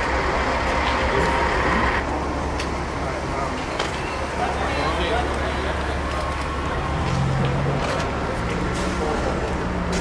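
Outdoor street ambience: a steady low rumble of traffic and vehicles, indistinct voices, and a few sharp clicks and knocks.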